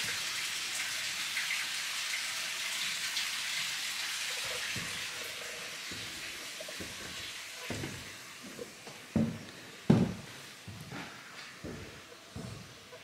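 A steady rushing hiss like running water that slowly fades, then a few footsteps knocking on wooden stairs and floorboards, the loudest about ten seconds in.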